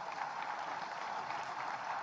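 An audience applauding: steady clapping from many hands.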